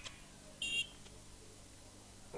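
A single short, high-pitched beep about two-thirds of a second in, over faint background hiss.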